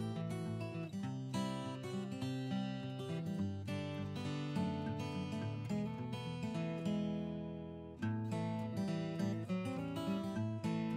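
Background music: acoustic guitar being strummed and picked. About eight seconds in, a held chord rings out and fades before the playing starts again.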